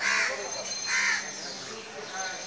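A crow cawing twice, about a second apart.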